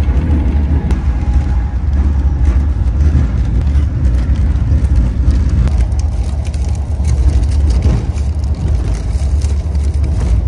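Steady low rumble of an Amtrak passenger train in motion, heard from inside the coach.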